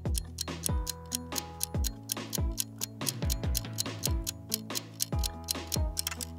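Quiz countdown-timer music: steady clock-like ticking over held synth tones and a low, repeating beat.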